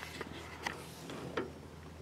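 Faint handheld camera handling noise: a few light clicks over a low steady hum.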